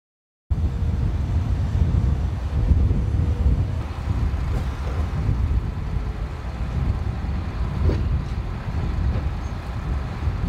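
Boat engines running with a steady low rumble that starts abruptly about half a second in.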